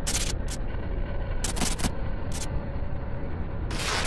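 Logo intro sound effect: a rumbling noise bed broken by sharp bursts at the start, about half a second in, around one and a half to two seconds in, and again just after two seconds, swelling up near the end.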